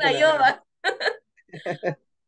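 A woman speaking, then laughing in short bursts.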